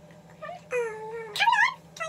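A girl making high-pitched wordless squeals: a long even one just under a second in, then a louder, warbling one near the end.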